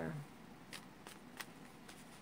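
A deck of Romance Angels oracle cards being handled and shuffled in the hand: three faint, short card clicks about half a second apart.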